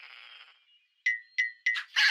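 Cartoon sound effect of three quick bell-like dings about a second in, each a bright struck tone that dies away fast, after a soft fading hiss.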